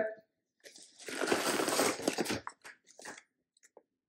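Crinkling and rustling of foil-lined plastic snack pouches being handled and swapped. There is a crackly burst of about a second and a half, then a few scattered rustles.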